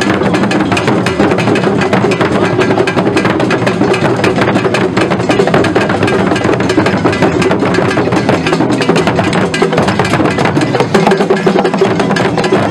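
Asante traditional drum ensemble playing: large barrel drums beaten with curved sticks in a fast, dense, unbroken rhythm.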